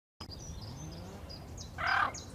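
Bird ambience: small birds giving short high chirps and whistles over a low outdoor background, starting after a brief silent gap. A louder, harsher call from a larger bird comes near the end.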